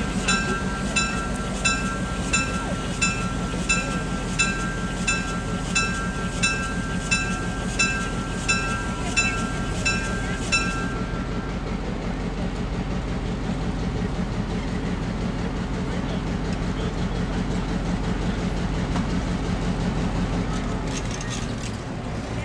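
Locomotive bell on EMD FP7 No. 6133 ringing in even strokes, about three every two seconds, then stopping about 11 seconds in. Under it, the FP7's 16-cylinder EMD 567 diesel engine runs steadily at low power as the train approaches slowly.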